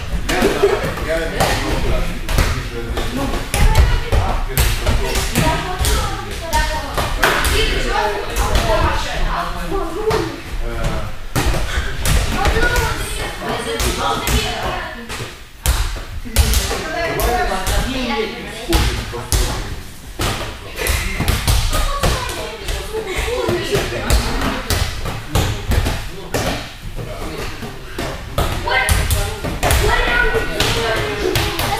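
Light balls being volleyed by hand and bouncing on gym mats: many irregular thumps and taps, with voices throughout.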